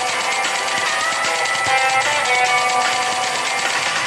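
Background music, a light tune with guitar playing throughout.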